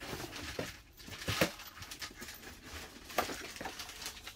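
Handling noise from an oxygen hose and its metal end fitting: rustling with a few sharp clicks and knocks, the loudest about a second and a half in and again near the three-second mark.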